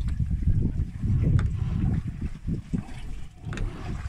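Uneven low rumble of wind buffeting the microphone aboard a fishing boat at sea, with a couple of sharp clicks, one about a second in and one near the end.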